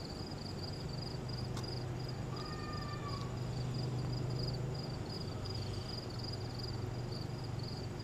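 Crickets chirping steadily in a fast, even pulse of about four chirps a second, over a low background hum and one or two faint clicks.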